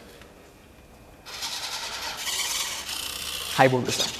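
Servo motors in a homemade humanoid robot's arm driving it up into a handshake position: a rough, rasping mechanical whir that starts about a second in and lasts about two seconds.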